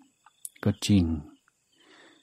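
Only speech: a man saying one short phrase in Thai during a sermon, with a faint hiss near the end.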